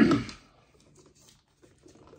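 A plastic dip tub being opened by hand: a loud short rasp of the lid coming off at the very start, then faint crinkling and small clicks of the lid and seal being handled.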